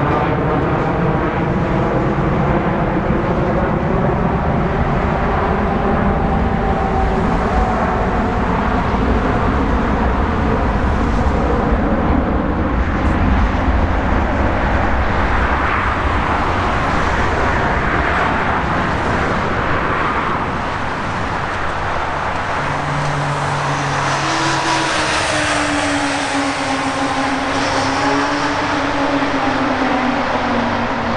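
Twin jet engines of an Airbus A330-300 at climb power just after takeoff: a loud, steady roar with pitched tones that slowly fall as the airliner climbs away.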